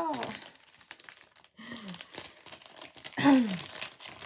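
Crinkling and rustling of crinkly packaging being handled at a craft table, with two short falling vocal sounds from the crafter, the second near the end and the loudest.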